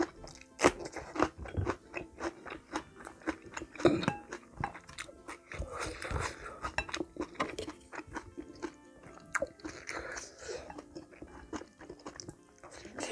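Close-up eating: sharp, irregular crunches as a raw green chili pepper is bitten and chewed. About six seconds in comes a sip of stew broth from a wooden spoon.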